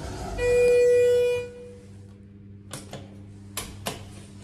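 Schindler 330A hydraulic elevator's electronic signal tone: a single buzzy beep about a second long. Near the end come three sharp clicks as the car's buttons are pressed.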